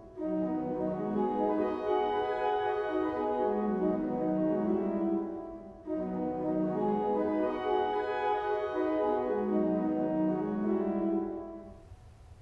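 Pipe organ playing a short scalar practice pattern in dotted rhythm, one hand dotting while the other stays even. It is played twice, as two phrases of about six seconds each with a short break between them.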